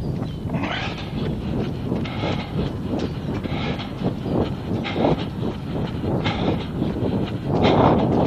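A runner's footsteps on a wet pavement, a rhythmic beat of about two to three steps a second, with hard breathing at a high heart rate. A louder rush of noise comes near the end.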